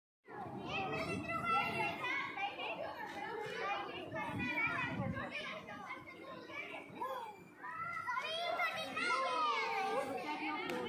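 Children's voices chattering and calling out as they play, several at once, with a brief lull about three-quarters of the way through.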